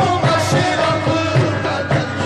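Qawwali music: a sustained, wavering melody line over repeated hand-drum strokes, a few beats a second.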